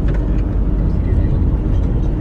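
Inside a moving car's cabin: a steady low rumble of the engine and tyres on the road.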